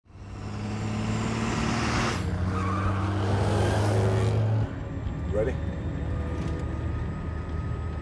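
Heavy armored truck's engine running loud as the truck drives in, with tyre noise building. About halfway through the sound cuts to a quieter, muffled engine rumble heard from inside the cabin.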